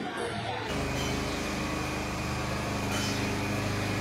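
A steady low machine hum with a rushing noise behind it, starting suddenly under a second in and then holding even.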